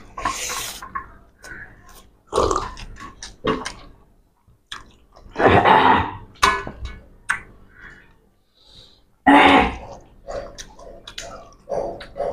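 Two people eating rice and fish curry by hand from steel platters: chewing and other mouth noises, with fingers scraping and gathering rice across the metal plates, in irregular bursts that are strongest about halfway through and again near the end.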